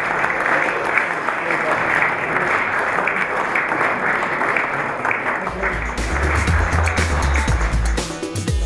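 Audience applauding, with music coming in with a heavy bass about five and a half seconds in.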